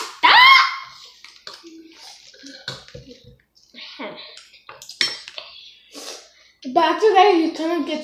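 Boys' voices, loud at the start and again near the end, with soft slurping and the small clinks of spoons and forks on bowls as spicy instant noodle soup is eaten in the quieter stretch between.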